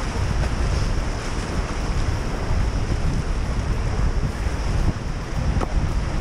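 Whitewater rapids rushing around an inflatable raft, with wind buffeting the action camera's microphone in a steady low rumble.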